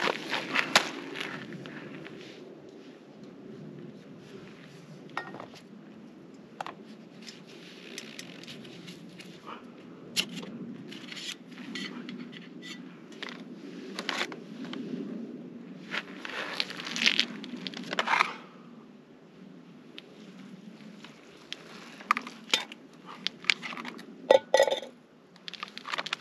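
Handling of a Jetboil Flash cooking cup and burner: scattered clicks, clinks and scrapes of the pot and stove parts being gripped and shifted, over a steady low rush.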